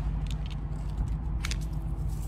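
A few soft taps and rustles as a paper sheet is pressed flat against a glass door, over a steady low hum.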